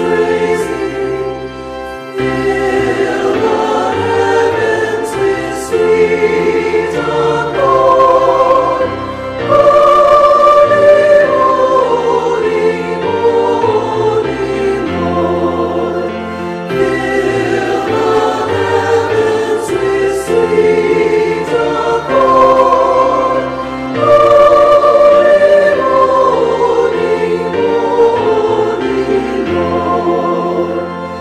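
A choir singing a slow hymn in held notes with vibrato, over steady low accompanying notes.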